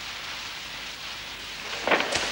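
A steady rushing hiss, like rain, with a short louder burst just before the end.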